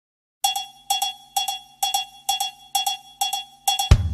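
Music intro: a cowbell-like struck note repeated evenly about twice a second, eight times, then a quick pair of hits as a drum kit and bass come in at the very end.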